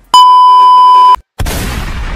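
A loud, steady, high-pitched censor bleep lasting about a second. After a short gap comes a sudden crash-like editing sound effect that fades away slowly.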